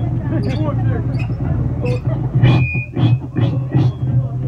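Voices talking and calling out over a steady low hum from the stage amplifiers, with scattered clicks and knocks, in the pause between songs at a live punk gig. A brief high tone sounds about two and a half seconds in.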